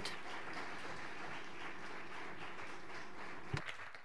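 Audience applauding steadily, with a single thump about three and a half seconds in, starting to fade near the end.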